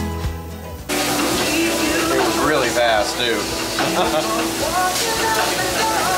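Music cuts off about a second in, giving way to busy restaurant sound: people's voices over music, with a steady hiss underneath.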